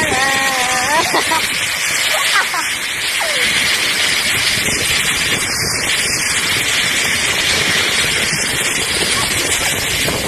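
Rushing air on a phone's microphone while riding a zip line: a loud, steady noise throughout. A young woman's voice sounds briefly at the start.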